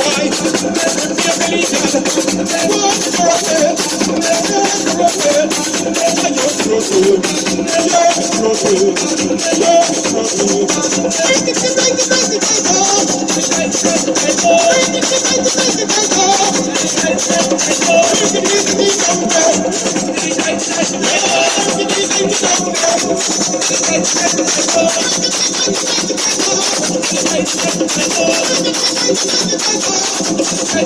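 Live folk music with hand drums and a steady shaker rattle, a wavering melody line over them, loud and unbroken.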